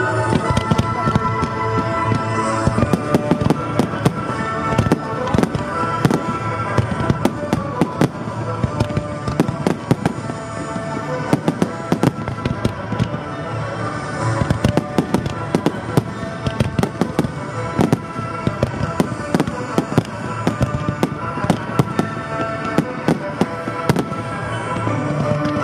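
A fireworks display: many sharp bangs and crackles in quick succession as low comets and mines fire and aerial shells burst. The show's music soundtrack plays steadily underneath.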